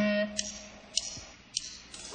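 A sustained pitched chord rings out and fades while three sharp clicks fall at an even pace, about 0.6 s apart: a drummer clicking sticks together to count in a heavy rock song.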